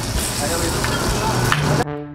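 Fish frying in shallow oil on a flat griddle: a steady sizzle that cuts off just before the end.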